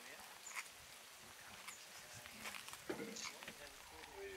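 Lion cubs feeding on a carcass, with scattered faint crunching clicks as they chew, under faint murmured voices.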